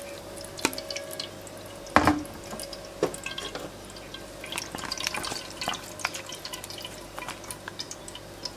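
Thin blended chili sauce draining and dripping through a metal mesh sieve into a frying pan, with scattered small ticks and one sharp knock about two seconds in.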